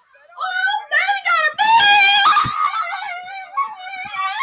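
A person's voice screaming and wailing without words: high-pitched cries that rise and fall in pitch, loudest about two seconds in.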